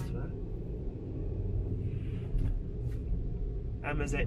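A car driving, heard from inside the cabin: a steady low rumble. A man's voice comes in right at the end.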